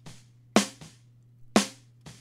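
Soloed recorded snare drum, top and bottom mics, playing back in a mix: a sharp ringing snare hit about once a second, each followed by a much softer hit, over a faint steady low hum. It is being auditioned with an EQ just switched on for the snare bottom track.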